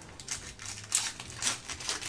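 Foil wrapper of a Yu-Gi-Oh! Legend of Blue-Eyes White Dragon booster pack crinkling as it is torn open by hand, a few short crackles.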